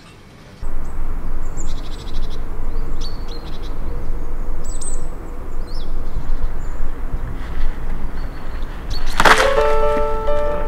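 Birds chirping over a loud, uneven rumble of wind on the microphone, which cuts in abruptly under a second in. About nine seconds in, plucked-string music begins.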